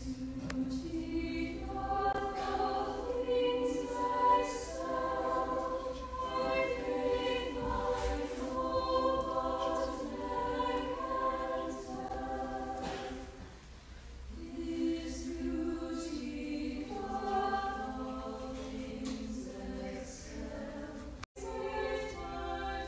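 A choir singing in several-part harmony, with a brief pause about two-thirds of the way through before the singing resumes. The sound cuts out for an instant near the end.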